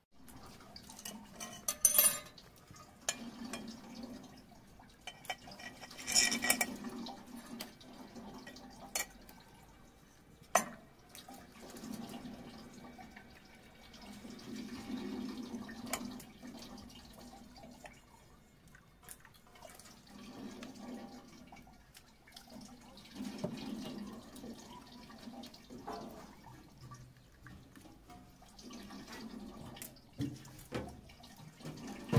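Water trickling and splashing from the tap of a metal tin onto the blades of a small paddle wheel, with a few sharp metallic clinks and knocks, the loudest about 2, 6 and 10 seconds in.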